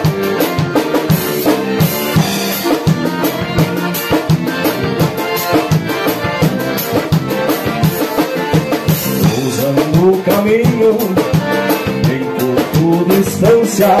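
Live instrumental passage of gaúcho vanera dance music: piano accordions carry the melody over strummed acoustic guitar and a drum kit keeping a steady, driving beat.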